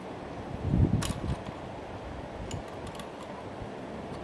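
Handling noise and small metal clicks as the parts of a vintage Frigidaire bellows cold control are fitted together by hand. There is a bump and a sharp click about a second in, then a few faint ticks.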